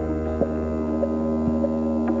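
Ambient electronic synthesizer music: a sustained, steady drone of several held tones, with a few sparse short notes sounding over it.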